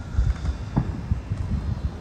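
Wind buffeting the microphone: an uneven low rumble with no clear events.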